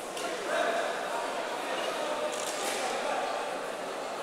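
Indistinct chatter of many voices, echoing in a large sports hall.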